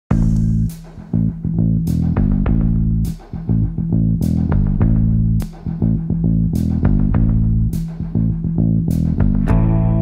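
Instrumental intro of a singer-songwriter rock song: a bass guitar line with a sharp percussion hit about every 1.2 seconds. A brighter guitar part comes in just before the end.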